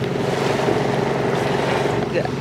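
A boat motor running steadily at a low drone, under a haze of wind and surf noise.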